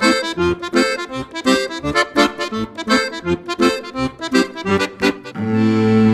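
Accordion music playing a quick, rhythmic run of short detached notes, then settling onto a long held chord about five and a half seconds in.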